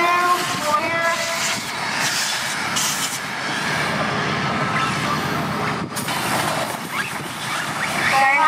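Two-stroke gas engines of 1/5-scale RC race trucks buzzing at high revs, strongest at the start and again at the very end, with a fainter buzz and a noisy wash in between.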